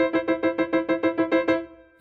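Piano with one right-hand sixth (E and C above middle C) repeated as rapid staccato chords, about seven strikes a second, played as fast as the player can manage. The repetitions stop about a second and a half in, and the last chord dies away. At this speed the bounce takes muscular effort and brings tension into the hand.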